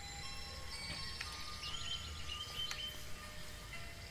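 Faint background music of soft, high, chime-like notes sounding one after another at different pitches.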